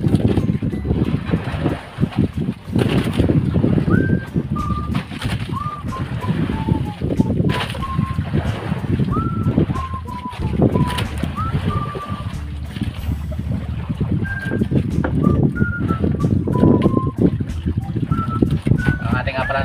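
A person whistling a slow tune, single notes that scoop up into each pitch, over a heavy, gusting rumble of wind buffeting the microphone on an open boat at sea.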